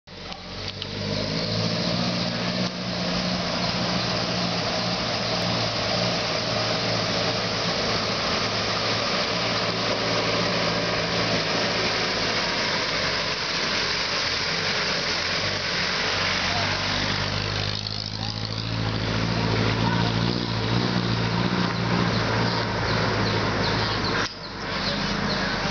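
Passenger jeepney's diesel engine running at low revs as it crawls along a rough stony dirt road. The engine note dips briefly about three-quarters of the way through, then picks up again.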